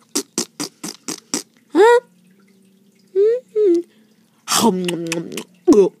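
A person's voice beatboxing and humming. It starts with a quick run of mouth clicks and pops in the first second and a half, then short sliding hummed notes, and a louder, longer breathy vocal sound a little past halfway.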